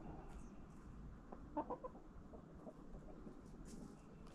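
Backyard hens clucking softly, with a quick run of three or four clucks about a second and a half in, amid faint pecking clicks as they peck at a carved pumpkin.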